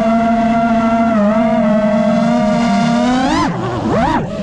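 FPV racing quadcopter's brushless motors and propellers whining at a steady pitch. Near the end the pitch rises, drops sharply and climbs back as the throttle changes.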